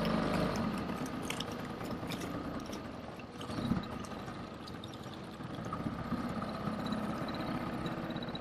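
Small 3.5-horsepower outboard motor on an inflatable dinghy running, its level easing off over the first three seconds and then holding steady.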